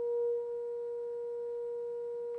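A steady 475 Hz sine tone from a frequency-generator app, played through a loudspeaker into a propane-filled Rubens tube, a little louder in the first half second. The tone resonates in the tube as a standing wave.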